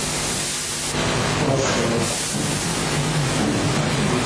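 Steady, loud hiss of a noisy audio recording, with faint indistinct voice-like sounds beneath it.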